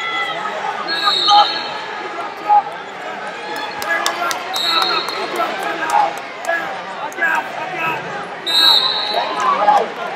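Wrestling-tournament din in a large echoing arena: coaches and spectators shouting, with wrestling shoes squeaking and bodies thudding on the rubber mats. A short, high referee's whistle sounds three times.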